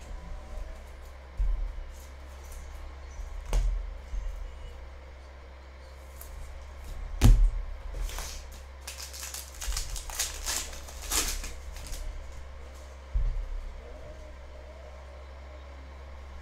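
Foil trading-card pack wrapper torn open and crinkled in the hands, a crackly rustle in the middle of the stretch. Scattered knocks and bumps come from cards and packs handled on a table, the loudest a sharp knock about seven seconds in. A steady low hum runs underneath.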